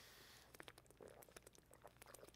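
Near silence, with faint small clicks and gulps of a man drinking from a plastic water bottle.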